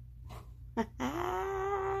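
A drawn-out, high whining vocal sound, held at one pitch for over a second before falling away, after a couple of brief shorter sounds. The low steady rumble of a moving car's cabin runs underneath.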